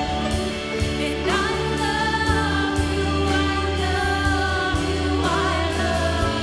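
Live worship band playing a slow gospel song: a woman leads the singing with backing singers, holding long notes over sustained chords and a steady beat.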